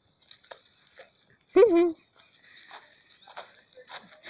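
A dog barks once, loud and short, about one and a half seconds in, with faint ticks and rustles around it.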